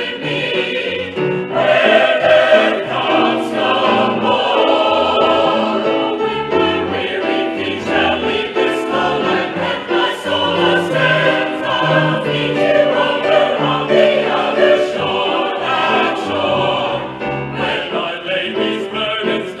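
A mixed choir of men and women singing a Southern gospel convention song together, with piano accompaniment, continuously.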